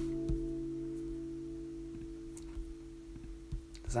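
An acoustic guitar chord left ringing, slowly dying away, with a few faint knocks in the background.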